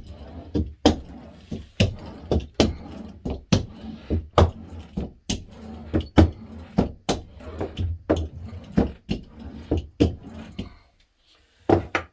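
Small hand roller rolled back and forth to press fabric down onto glued leather. It makes a low rumble with a sharp knock about twice a second, and the rolling stops near the end.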